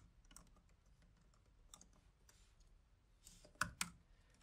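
Faint typing on a computer keyboard: scattered soft keystrokes, with a couple of louder key presses near the end.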